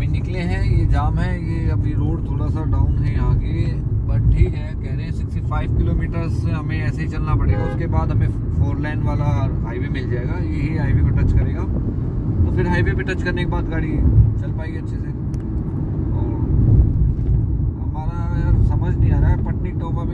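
A man talking inside a moving Suzuki car, over the steady low rumble of road and engine noise in the cabin.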